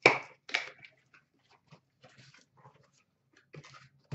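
Cardboard boxes being handled and slid out of a stack: two sharp scraping knocks about half a second apart at the start, then faint rustles and taps.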